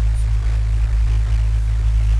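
A loud, steady low-pitched hum with a faint hiss over it.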